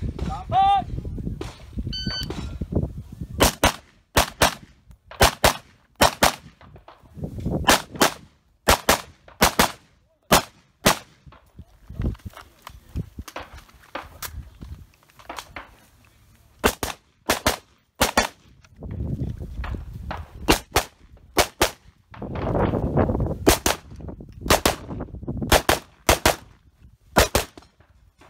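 A shot timer's start beep, then rapid semi-automatic rifle fire from an AR-15-style rifle for the rest of the stage. Most shots come in quick pairs, and there are short pauses between strings as the shooter moves.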